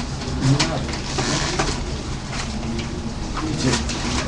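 A low, murmured voice, hummed or cooing-like, over steady room noise.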